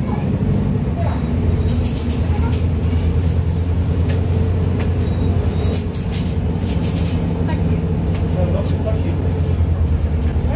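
Diesel engine of a Mercedes-Benz O-500U city bus running steadily with a deep, even hum, with light rattling clicks over it.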